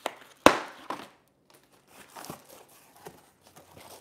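Packing foam and cardboard being cut and pulled off a new e-bike frame: one sharp, loud click about half a second in, then softer clicks and crinkling rustles.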